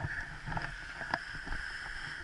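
Steady wind hiss on a paraglider pilot's camera just after landing, with a few soft knocks and rustles as he moves on the grass and the wing settles.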